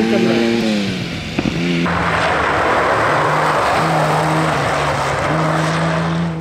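Lancia Stratos rally car's engine held at steady revs, then cut off abruptly. About two seconds in comes a loud rushing hiss over a lower, steady engine note from a Datsun Z rally car.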